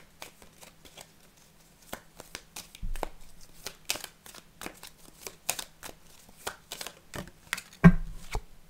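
A tarot deck being shuffled by hand: a quick, irregular run of card slaps and flicks, with a louder knock near the end.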